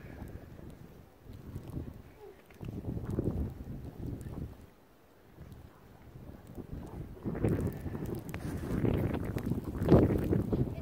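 Wind buffeting the microphone outdoors: an uneven low rumble that comes in gusts, drops away about five seconds in and swells again later. A sharp bump near the very end.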